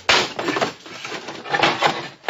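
Radio-drama sound effect of a wooden crate being forced open: a sudden crack of wood at the start, rough scraping, and more cracking about one and a half seconds in.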